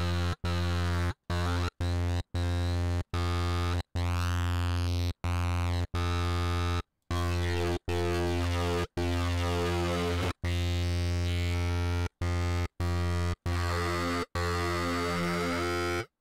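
A heavily distorted saw-wave synth note from Bitwig's Polymer, fed through two chained Bitwig Amp devices. The same low note is played over and over, about one or two times a second, each note a different length with short gaps between. An envelope modulates the Amp's cabinet size, so the upper tone sweeps and shifts from note to note, a bit like a reverb filter.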